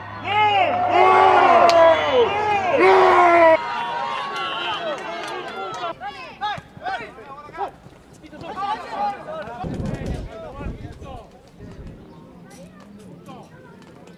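Several men shouting and yelling over one another in celebration of a goal, loud for the first three and a half seconds and then cut off suddenly. Fainter scattered shouts and calls from players on the pitch follow, with a brief low rumble about ten seconds in.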